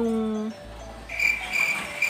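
Cricket chirping: a steady, high-pitched trill that starts about a second in.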